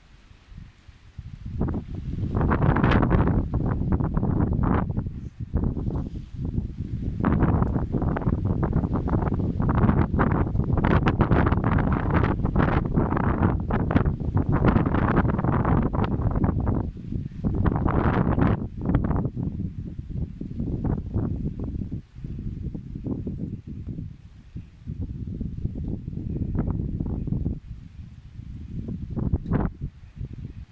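Strong sea wind buffeting the microphone in gusts, a low rumbling roar that swells and eases, with leaves rustling in the trees.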